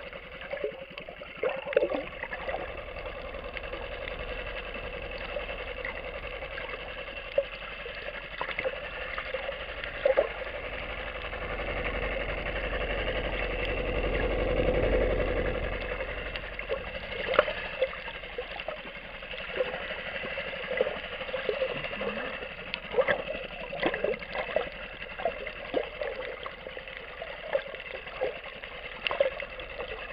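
Underwater sound heard through a camera housing: a steady motor drone, typical of a boat engine in the water, swelling to a peak about halfway through and fading again, with scattered sharp clicks and crackles throughout.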